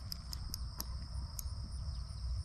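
A steady, high-pitched chorus of insects in the grass, with a low rumble of wind on the microphone and a few faint ticks.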